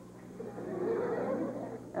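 A crowd of excited children's voices, many at once, chattering and squealing together; it swells up over the first second.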